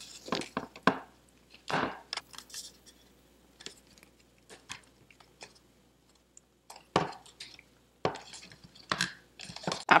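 Hands pressing a flexible LED light strip into a plastic headlight housing: scattered soft clicks, taps and rustles of plastic being handled, a few a little louder about two seconds in and near the end.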